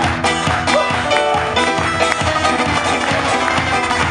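Two acoustic guitars strummed briskly in an upbeat Irish folk rhythm, an instrumental passage without singing between two songs of a medley.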